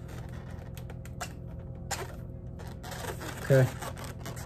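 Black marker drawing on an inflated latex balloon: faint scratching with a few light ticks of the tip on the rubber.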